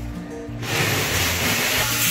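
Background music with a steady bass line. About half a second in, a loud, even hiss starts and keeps going: an angle grinder grinding metal.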